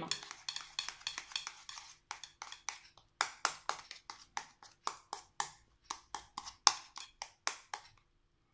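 Small plastic spoon stirring a thick ground-walnut paste in a small ceramic bowl, clicking and scraping against the bowl about four or five times a second.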